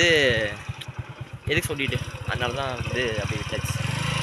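A man talking, over a steady low rumble with an even pulse.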